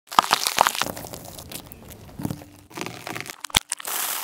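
Car tyre crushing green bell peppers on asphalt: a few sharp cracks as the skins split, then a stretch of crunching and crackling. About three and a half seconds in, after a cut, there is one sharp snap.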